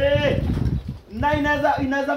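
A man's voice singing or chanting drawn-out notes: one note rises and falls near the start, and after a short break a long, steady held note begins about a second in.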